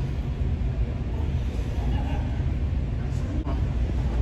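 A steady low rumble at an even level, with faint voices in the background.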